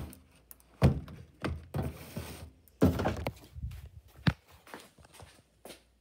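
Handling noise: three dull thunks, about one, three and four seconds in, with rustling and scraping between them and a few lighter knocks near the end, as things are moved about by hand.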